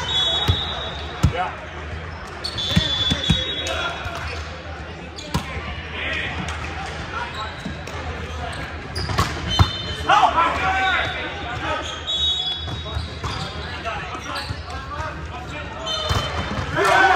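Indoor volleyball play in a large echoing sports hall: sharp smacks of the ball being hit, short high squeaks of athletic shoes on the hardwood court, and players shouting calls. The loudest moments are a hard hit a little past the middle, followed at once by shouts.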